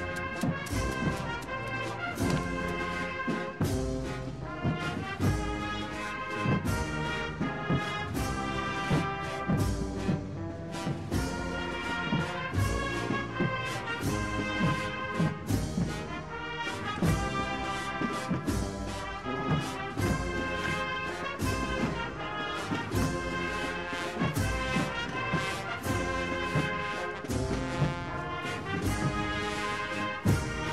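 Brass and drum band playing a slow processional march: sustained brass chords over a steady drum beat.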